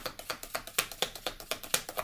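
A deck of tarot cards being shuffled overhand by hand: a rapid run of small card slaps, about ten a second.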